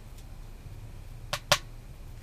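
Two sharp clicks close together about a second and a half in, the second much louder, from a small plastic hand warmer being handled in the hands, over a faint steady hiss.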